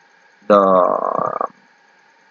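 A man's voice holding a drawn-out hesitation, a long "theee…" lasting about a second, slightly rough in tone.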